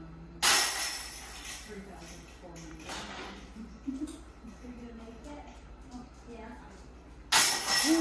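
Disc golf putters hitting the hanging chains of a chain-link basket: a loud metallic jangle about half a second in and another near the end, each ringing out for about a second.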